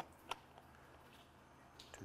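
Near silence: faint outdoor room tone with one short click about a third of a second in and a fainter tick near the end.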